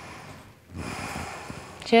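A woman breathing deeply: one breath fading out in the first half second, then after a short pause a second, longer breath lasting about a second.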